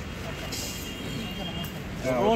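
Outdoor background noise of a small gathering: a steady low rumble with faint, indistinct voices, and a brief hiss about half a second in.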